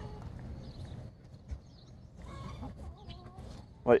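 Chickens in a flock clucking quietly, with a few short, low calls in the second half.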